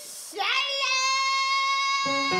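A singer's voice slides up, about half a second in, into one long high note held steady on stage.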